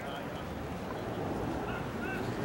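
Distant voices over a steady low rumble, with a few short, faint, high-pitched yelps.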